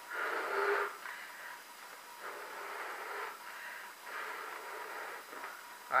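A rubber party balloon being blown up by mouth: about four long puffs of breath into it, each lasting about a second, the first the loudest.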